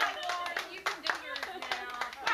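Several people clapping their hands, sharp claps repeating over talking voices.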